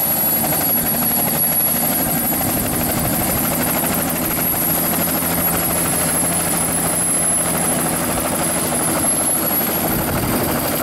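Turbine helicopter with a two-bladed main rotor running on its pad while the rotor turns up to speed: a steady high-pitched turbine whine over dense engine and rotor noise.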